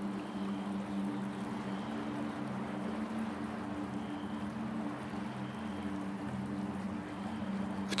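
Soft ambient meditation background: a steady low drone of a few held tones under a gentle, water-like wash of noise, with faint brief high tones coming back every couple of seconds.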